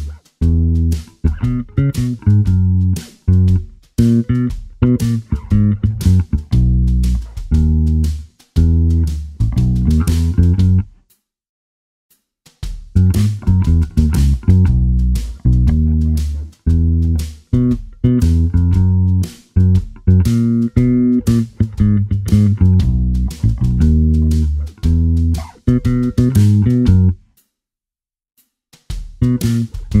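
Fender Jazz Bass electric bass guitar played fingerstyle, a steady line of separate plucked low notes on the song's B, E and F♯ chords, with two short rests of silence, one about eleven seconds in and one near the end.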